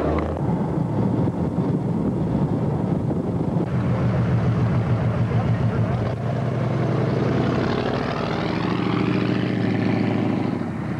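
Car engine running while driving on a gravel road, with the engine note rising in the last few seconds.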